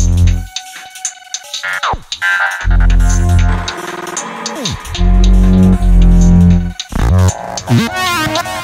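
Instrumental tech grime / glitch bass beat at 77/154 BPM in A# minor: heavy 808 sub-bass notes come in blocks with gaps between them, over synth stabs and drum hits. A falling synth sweep drops in pitch about two seconds in and again near five seconds.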